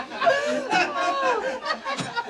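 Several voices talking over one another in lively, indistinct chatter.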